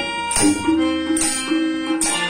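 Harmonium playing a melody of held notes, with a few tabla strokes, in an instrumental passage without singing.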